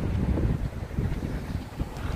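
Wind buffeting a handheld microphone: an uneven low rumble that swells and dips.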